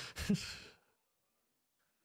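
A man's short breathy exhale, a sigh-like laugh that trails off within the first second, followed by complete silence.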